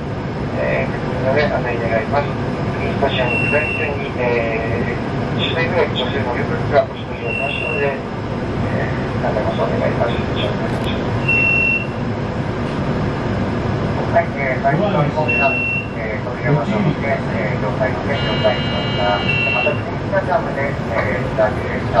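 Cab of a stopped HU300 light-rail tram: a short high beep repeats about every four seconds over the tram's steady running noise, with talking throughout.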